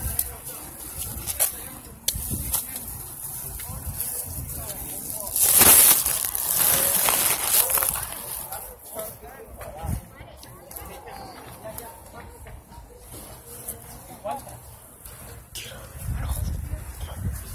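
Chatter of people at a busy outdoor market, with scattered clicks and knocks. About five and a half seconds in, a loud rushing noise covers everything for a couple of seconds.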